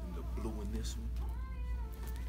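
A person's wordless vocal sounds: a brief murmur, then about a second in a high, drawn-out note that bends up and down. A short swish of jacket fabric comes just before it, over a steady low room hum.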